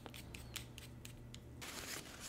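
Faint, quick clicks and ticks of fingers handling a fountain pen and its small parts, with a soft paper rustle near the end.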